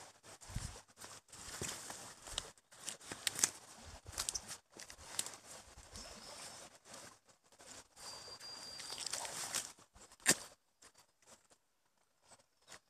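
Footsteps crunching on dry leaf litter and vegetation brushing against the walker on a bamboo-grove path, an uneven crackling rustle with many small snaps. It cuts off suddenly near the end, leaving only a few faint ticks.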